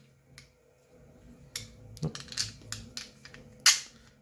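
Small clicks and taps of steel M5 button-head screws against a 3D-printed plastic part as two screws are pushed into their holes, with one sharper, louder click near the end.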